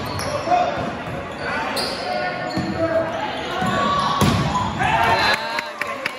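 Indistinct voices of spectators and players echoing in a large gymnasium, with a few sharp thumps of a volleyball being hit or bouncing on the gym floor, the loudest about four seconds in.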